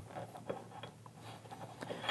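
Faint handling noise with a few soft ticks: fingers pressing a rubber spacer pad onto a plastic helmet-headset mounting clamp.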